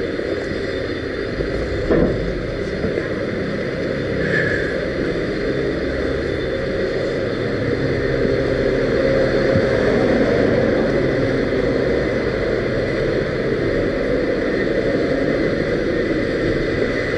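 Steady rumbling noise of a small vehicle rolling along a sidewalk, with a single knock about two seconds in.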